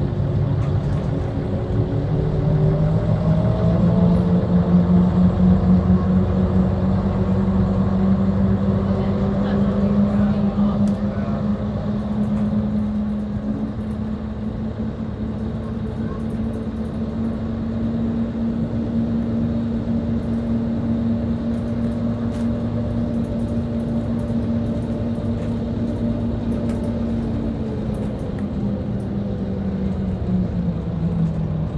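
Bus engine and drivetrain heard from inside the cab, rising in pitch as it accelerates over the first few seconds, then holding a steady drone while it cruises, and easing down slightly near the end as it slows.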